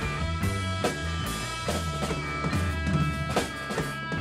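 Live band playing a blues-rock tune: electric guitar, keyboard and drum kit over a low bass line, with held notes ringing on and regular drum strikes, the loudest hit a little before the end.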